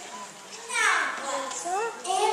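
A child's voice cries out loudly about two-thirds of a second in, falling steeply in pitch, then carries on with shorter voiced sounds.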